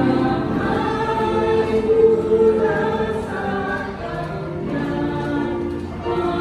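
A small group of women's, girls' and a man's voices singing a praise song together, holding long notes.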